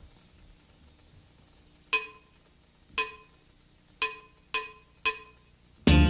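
Five short, ringing clicks count in the exercise: three about a second apart, then two quicker ones. Just before the end an electric bass comes in, played slap style.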